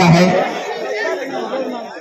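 A man's voice ends a sentence right at the start, then a crowd of spectators chattering, many voices talking at once.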